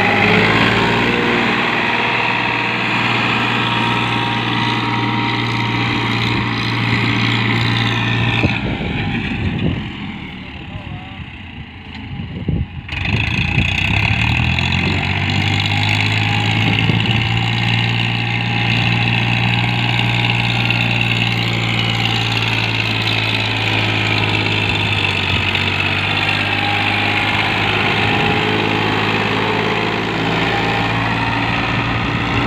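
Farmtrac Champion tractor's diesel engine running steadily under load as it drags a rear implement through the soil. Around a third of the way through the sound drops away for a few seconds, then comes back with the engine note rising as it revs up again.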